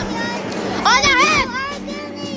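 A child's high-pitched shout, about half a second long and wavering in pitch, about a second in, over the chatter of a crowd.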